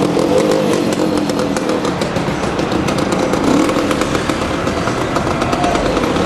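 A scooter engine running close by, with a brief rise in revs about three and a half seconds in.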